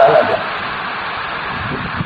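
The last syllable of a man's speech, then steady background hiss with no other sound.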